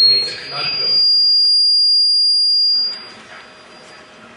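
Loud, high-pitched whistle of microphone feedback, one steady tone that steps up slightly in pitch just after it starts and cuts off about three seconds in.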